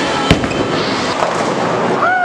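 A bowling ball lands on the lane with one sharp thud about a third of a second after release, then rolls with a steady noise under the echoing alley din.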